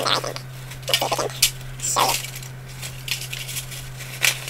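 Paper packet crinkling and rustling in short, irregular bursts as dried Spanish moss is pulled out of it over a foil tin.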